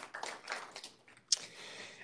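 Light, scattered applause from a small audience, thinning out about halfway through, followed by a single sharp click.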